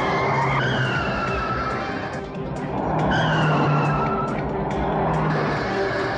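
Car-chase sound: cars driven hard with tyres screeching in long, slightly falling squeals, twice, over background music.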